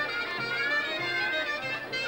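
Traditional folk dance music: a wind-instrument melody, clarinet-like, over a low bass note that repeats about twice a second.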